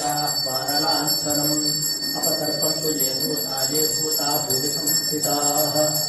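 Puja bell rung rapidly and without a break as the shrine curtain is opened, its high ringing struck over and over, with voices chanting beneath it.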